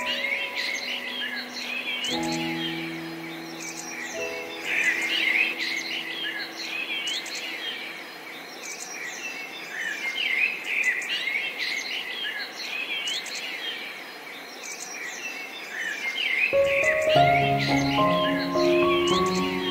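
A chorus of songbirds chirping and twittering, many quick high calls overlapping. Soft piano notes sound about two seconds in and die away, and the piano comes back in near the end.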